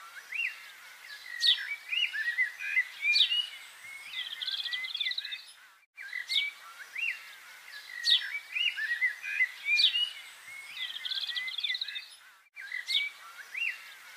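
Birdsong of chirps, quick upward whistles and short trills. The same stretch repeats about every six and a half seconds, with a brief cut to silence between repeats, like a looped birdsong track.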